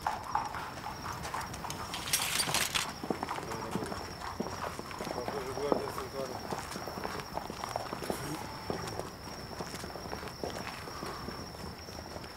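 Horses' hooves clip-clopping at a walk on stone paving: irregular knocks from several hooves, with a brief hiss about two seconds in.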